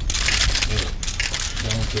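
Rapid, irregular clicking of many press photographers' film camera shutters and motor drives, over a murmur of voices in the room; a laugh starts near the end.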